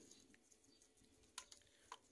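Near silence, broken by two faint short clicks in the second half.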